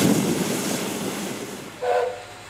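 Running noise of a narrow-gauge train heard from on board, an even rumble and rush that fades away steadily. Near the end there is a brief pitched toot.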